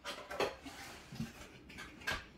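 Cardboard packaging being handled as a box is opened: irregular rustling and scraping, loudest about half a second in.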